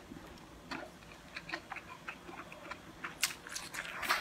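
Close-miked chewing of a mouthful of noodles: soft, wet mouth clicks, irregular, with one sharper click about three seconds in.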